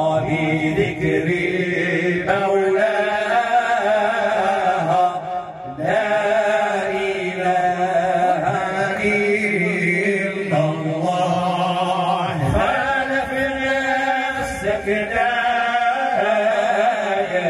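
A man chanting Islamic devotional praise for the Prophet in a long, wavering melody, with a short break for breath about five seconds in.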